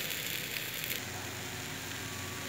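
Egg omelette mixture frying on low heat in a lidded frying pan: a steady sizzle, with a few light crackles in the first second.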